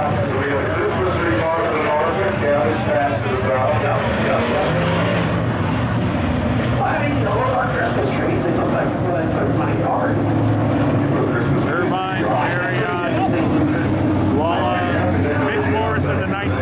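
A field of IMCA Modified race cars' V8 engines running at slow pace speed around a dirt oval as the cars line up for a double-file restart: a steady, many-engined drone.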